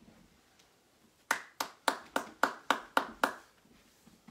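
One person's hands clapping, eight even claps at about four a second, starting a little over a second in: applause at the end of a piano piece.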